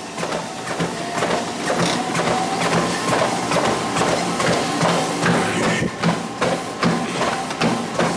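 Treadmill running, its motor whine creeping up in pitch as the speed is stepped up, with a steady rhythm of footfalls on the moving belt.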